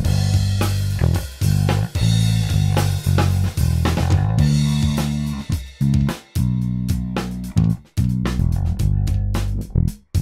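Electric bass guitar playing a melodic line over kick drum and drum-kit overhead mics. The bass tone is shaped by Melodyne's spectral editing of its harmonic overtones to sound more punchy and aggressive. Playback stops right at the end.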